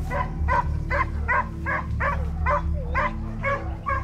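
Pack of hunting hounds baying in pursuit of a wild boar: a quick run of about ten barks, two to three a second.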